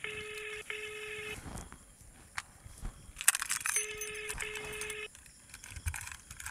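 Telephone ringback tone heard through a phone's earpiece while an outgoing call rings unanswered: a steady low tone in double pulses, two double rings about three seconds apart.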